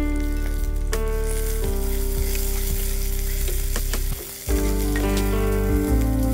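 A tempering of chopped onion, garlic, curry leaves and rampe sizzling in hot oil in a clay pot as it is stirred. Background music of held notes runs underneath and changes every second or so; all of it dips briefly just after four seconds in.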